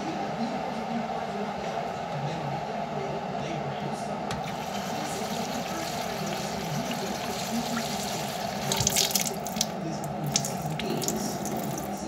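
Water running from a kitchen tap and splashing into a cup, with a burst of louder splashes and clinks about nine to ten seconds in.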